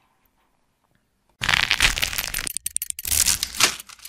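Sound effects of an animated logo sting: silence for over a second, then two loud bursts of noise with a rapid clicking texture, the second shorter.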